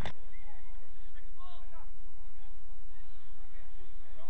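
Faint, distant shouts and calls from players across an open football pitch, short and rising and falling in pitch, over a steady low hum.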